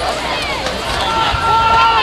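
Players and sideline spectators shouting on a football field around the snap. One voice holds a long call over the second half.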